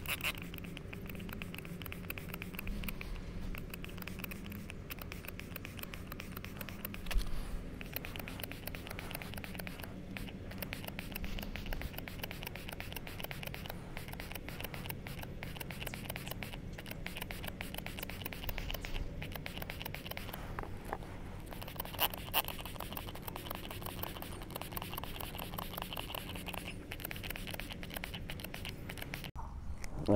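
Trigger sprayer of a K&N Power Kleen filter-cleaner bottle squeezed over and over, spritzing cleaner onto a cotton-gauze air filter in a steady run of quiet clicks and spray hiss, with a couple of louder knocks.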